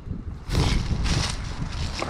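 Wind buffeting the microphone: a rumbling rush, beginning about half a second in.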